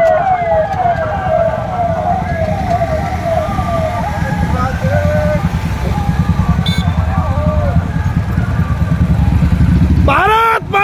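Police vehicle siren sounding a fast run of falling notes, about two or three a second, which fades out about four seconds in. Under it, motorcycle engines run close by, growing louder toward the end.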